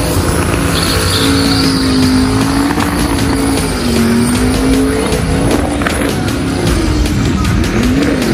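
Twin-turbo LS V8 held at high revs during a burnout, its pitch wavering slightly, with the rear tyres spinning against the pavement.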